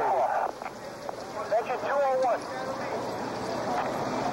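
Voices talking in short phrases, with a sharp knock about a second and a half in, then a steady noise with no clear words.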